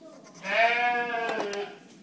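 A sheep bleats once, one long call lasting a little over a second.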